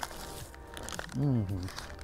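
A bite into a fried-cheese sandwich held in a paper wrapper, with the paper crinkling briefly. About a second in comes a man's short hummed "mm", the loudest sound.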